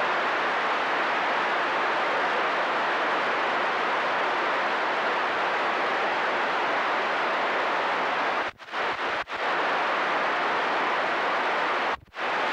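Steady hiss of static from a CB radio receiver on channel 28 with no voice on it. The hiss drops out for a moment twice, about eight and a half and nine seconds in, and again at the end.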